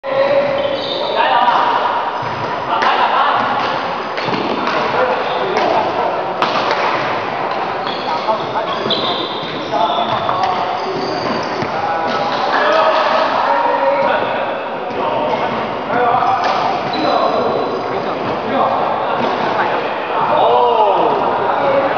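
Voices talking in a large indoor hall, broken by sharp knocks and thuds from a badminton game: rackets striking the shuttlecock and players' feet on the court.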